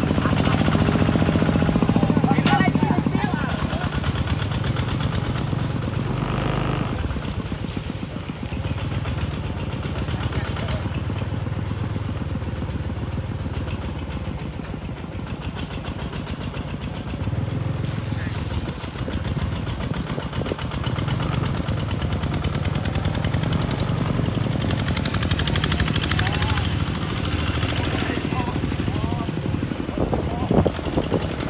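The small single-cylinder diesel engine of a Cambodian two-wheel tractor ('iron buffalo') running steadily as it pulls a loaded trailer, with a fast, even firing beat, and people talking over it.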